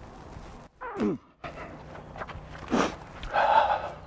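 A man clears his throat about a second in. Then a horse breathes out audibly near the end, a short blow followed by a longer breathy exhale, the release sigh of a horse settling after a chiropractic adjustment.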